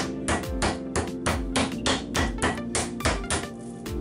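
Meat mallet pounding a raw pork cutlet flat on a wooden board in quick, even blows, about four a second, over background music.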